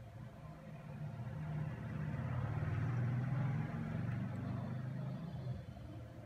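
A passing motor vehicle: a low rumble that builds over the first couple of seconds, is loudest in the middle, and fades away near the end.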